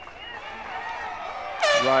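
A loud, high whoop from a spectator near the end, falling in pitch, cheering a well-ridden run, over faint arena crowd noise.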